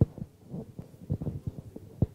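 Handling noise from a handheld microphone as it is carried and passed into another hand: a string of irregular dull thumps and rubbing, with a sharper knock at the start and again at the end.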